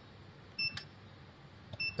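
Two short high beeps from an ATM-style metal PIN keypad (EPP) as two digits of a PIN are keyed in, about a second apart, each with a faint key click: the keypad's confirmation tone for each keypress.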